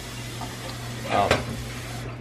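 Water running steadily into the rear water reservoir of a Keurig K-Duo coffee maker as it is filled.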